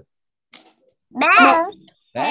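A child's voice over a Zoom call: one short, drawn-out pitched syllable about a second in, after a brief silence.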